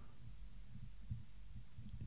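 Faint low background hum in a pause of the narration, with a few soft low thumps and a faint tick near the end.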